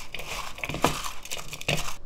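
Raw julienned potato sticks being tossed and squeezed by hand with salt in a mixing bowl: irregular crunching and clicking of the sticks against one another and the bowl, with a few sharper knocks.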